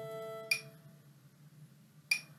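A violin holds a sustained bowed note that fades away about half a second in, marked by a short sharp click. A second click comes near the end, about a second and a half later, with only faint room noise between.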